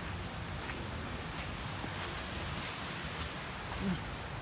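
Steady rain falling, an even hiss, with soft footsteps on wet ground.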